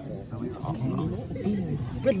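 Indistinct human voices talking, with no clear words.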